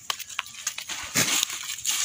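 Chinese cabbage heads being pressed and shifted by hand into a bundle: leaves rustling and crackling, with scattered sharp clicks and a couple of louder rustles in the second half.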